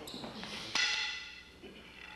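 Sharp wooden knocks as a sparring partner holding a rattan eskrima stick is thrown to the floor: a softer one at the start and a loud clack about three quarters of a second in, with a short ringing after it.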